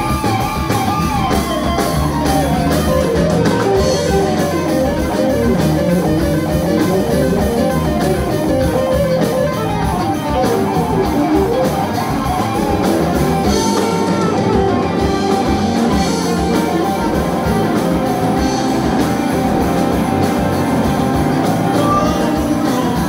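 Live blues-rock band playing an instrumental passage: several electric guitars trading lead lines over a drum kit, with no vocals.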